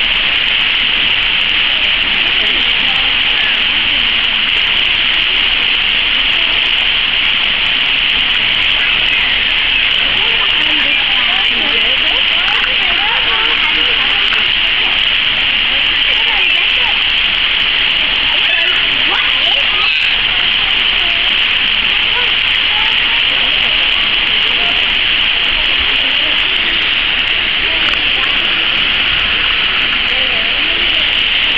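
Steady rushing hiss of a small fountain jet spraying into a pool, unchanging throughout, with indistinct voices of onlookers underneath.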